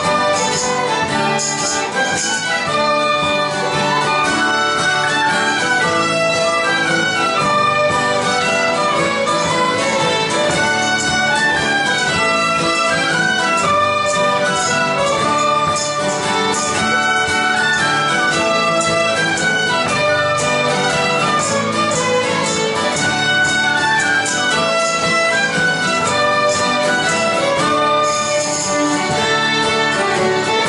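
Traditional Irish music group playing a tune together: several fiddles with piano accordion, banjo and guitar, the melody carried by the bowed fiddles at a steady, even level.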